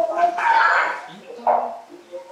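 Voices calling out short goodbyes, with a loud call about half a second in and another brief one at about one and a half seconds.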